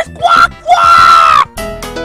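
A high, cartoonish puppet voice gives a short call, then a long yell held for about a second. It cuts off and a bright keyboard jingle starts about one and a half seconds in.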